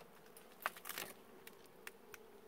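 A wild honeybee colony buzzing as a faint, steady hum while its nest in a rock crevice is smoked and opened for honey. A few short clicks and rustles come in the middle.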